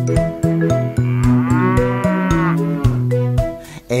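A cartoon cow's moo, one long call that rises and falls in pitch, starting about a second in, over instrumental children's music with a steady beat.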